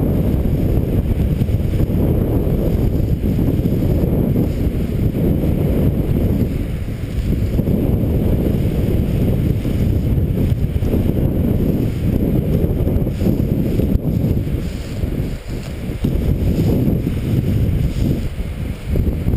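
Strong wind buffeting an action camera's microphone: a loud, steady low rumble that rises and falls in gusts, easing briefly a couple of times.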